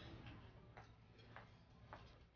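Near silence with three faint ticks about half a second apart over a low hum.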